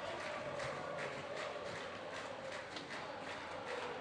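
Faint arena sound of a roller hockey game: a crowd haze with scattered light clicks from sticks, ball and skates on the rink floor.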